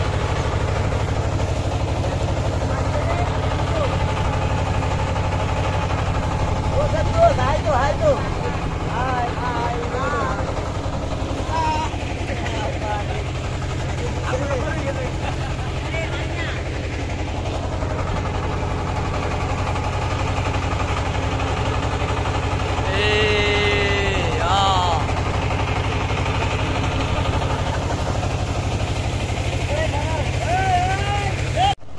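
Steady low drone of a river boat's engine running, with voices now and then over it and one louder call a little past two-thirds of the way through.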